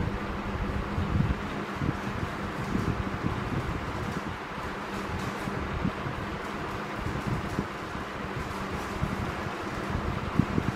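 Steady rushing background noise with an unsteady low rumble, like a running fan or air moving across the microphone; no speech.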